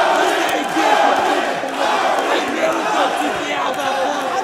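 Fight crowd in an arena shouting and yelling, many voices overlapping in a steady din, with single shouts rising out of it.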